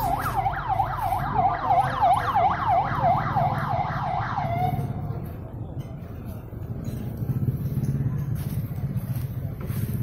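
Emergency vehicle siren on a rapid yelp, sweeping up and down about three times a second, then fading out about halfway through. A low rumble of vehicle engines and traffic runs underneath and grows louder near the end.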